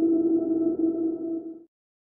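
Sonic Pi's dark_ambience synth holding one steady, low pad note with faint higher overtones. It fades out about a second and a half in and then stops.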